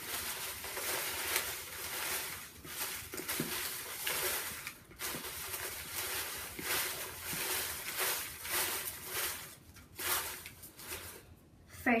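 Folded paper slips rustling and crackling as hands stir them around in a plastic bowl for a prize draw. It goes on steadily and eases off near the end.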